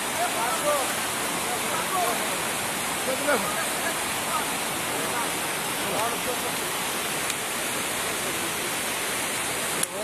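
A steady rushing noise under faint men's voices talking at a distance.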